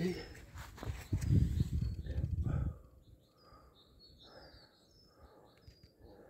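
Loud rustling and handling noise on the microphone with a few knocks for the first three seconds or so, as it is moved over grass. After that it goes faint, with short high bird chirps.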